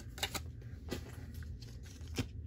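Pokémon trading cards and plastic card sleeves being handled: a few faint, light clicks and rustles, over a low steady hum.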